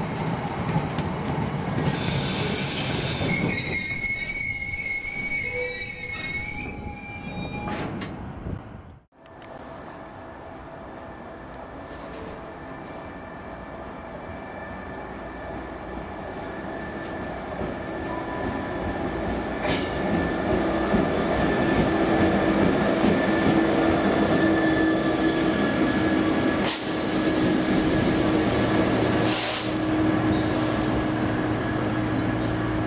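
A loaded train of freight hopper wagons rolls past, its wheels squealing with thin high-pitched tones over the rumble and clatter for the first several seconds. After a break about nine seconds in, a steady rolling rumble builds gradually louder, and in the last third a steady low hum from a Class 66 diesel locomotive is added.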